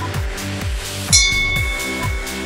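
Electronic dance music with a steady drum beat. About a second in, a bright bell-like chime rings out and slowly fades: the interval timer's signal that the work phase is starting.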